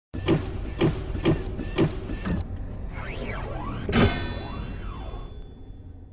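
Sound effects of an animated intro: five heavy thuds about half a second apart, then sweeping tones that rise and fall in pitch. A loud hit comes about four seconds in, and a ringing tail fades out after it.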